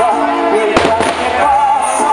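Firework bangs from a burning castillo firework frame: one sharp bang about three-quarters of a second in and a weaker one a moment later, over steadily playing music with a wavering melody.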